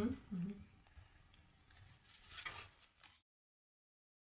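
A woman's brief "mm-hmm", then faint room tone with one soft noise about two and a half seconds in; the sound cuts off to dead silence a little after three seconds.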